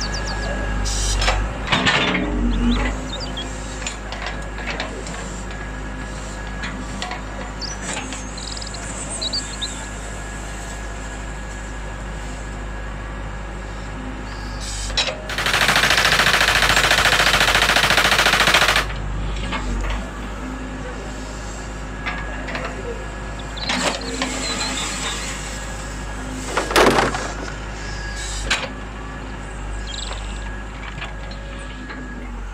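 Model excavator's breaker hammer chattering rapidly against a rock for about three seconds, midway through, the loudest sound here. Shorter, weaker bursts of the same machine noise come near the start and again near the end.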